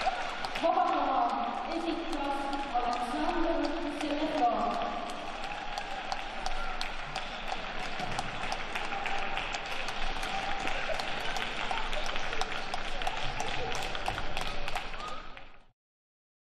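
Audience applause in an ice rink, individual claps distinct, greeting the end of a figure skating free program. A voice is heard over it in the first few seconds, and the applause cuts off suddenly just before the end.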